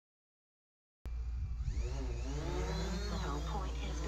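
Silence, then about a second in the whine of a DJI Mavic Air quadcopter's propellers begins abruptly as it flies close by. Its pitch glides up and down as the motors change speed, over a steady low wind rumble on the microphone.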